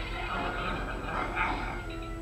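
Small dogs yipping on a movie soundtrack, heard through a television's speaker: short, high, broken calls.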